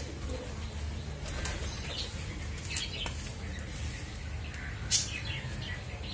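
Small birds chirping in short, scattered calls, the loudest about five seconds in, over a steady low rumble.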